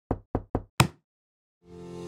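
Four quick knocks about a quarter second apart, the fourth louder and sharper than the rest. Near the end, music begins to swell in.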